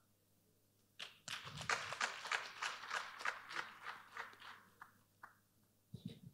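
Audience applauding: a patter of scattered clapping that starts about a second in and dies away a few seconds later.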